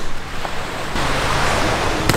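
Surf washing on a sandy beach, with wind on the microphone. A steady rush that swells from about a second in.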